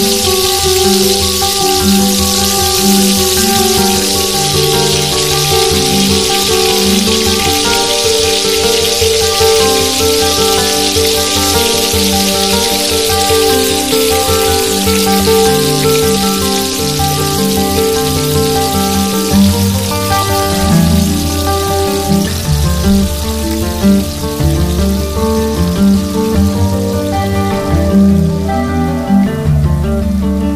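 Sizzling hiss of food frying in oil in a tiny black kadai, heard under background music; the sizzle fades away near the end.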